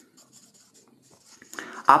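Marker pen writing on a whiteboard: a run of short, faint scratching strokes as letters are drawn.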